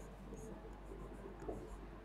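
Faint scratching of a pen drawing on an interactive smart board, with a light tap about one and a half seconds in.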